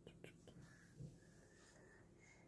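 Near silence: a faint whisper and a few soft ticks against room tone.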